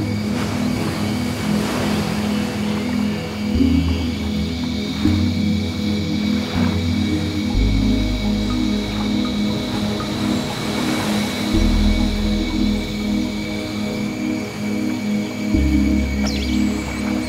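Ambient background music: held tones over a low bass note that changes about every four seconds, with slow swells.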